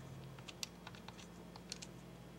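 Faint, irregular clicks of TI-89 Titanium calculator keys being pressed one after another, over a faint steady hum.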